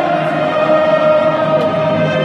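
A stadium crowd singing an anthem together with a band playing on the pitch, one long note held through the moment.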